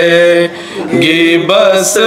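Men chanting a Shia noha (Muharram lament) unaccompanied, in long held notes. The sound drops briefly about half a second in for a breath, then the chant resumes.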